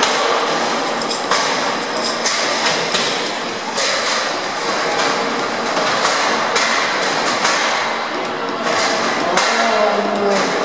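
Sharp clanks and thuds of featherweight combat robots ramming each other and the arena's walls and floor, coming irregularly about once a second, with crowd voices in the background.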